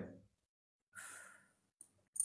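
Near silence, with a faint exhalation from a person about a second in.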